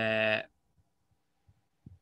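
A man's drawn-out hesitation sound, one held vowel like "ehh" at a level pitch lasting about half a second, then quiet with a faint hum and a couple of soft taps.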